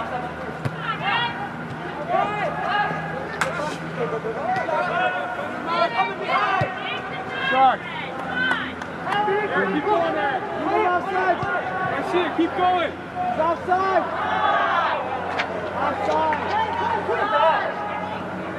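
Overlapping distant voices of players and onlookers shouting and calling across an indoor soccer field, with a few sharp knocks.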